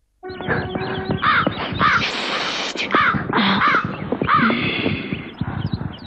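Repeated harsh bird calls, about half a dozen in a few seconds, each rising then falling, over a noisy background scattered with small clicks.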